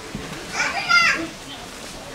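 Children's voices: one child's high-pitched call, about half a second to a second in, over children playing in the background.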